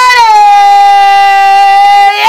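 A woman singing one long, loud held note that steps down slightly in pitch shortly after the start.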